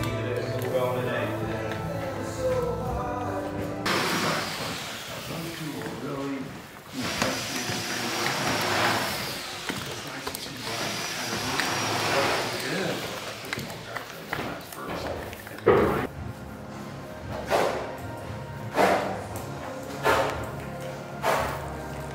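Background music, with indistinct voices beneath it.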